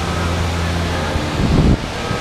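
Steady rushing background noise with a low hum under it, and a brief low rumble about one and a half seconds in.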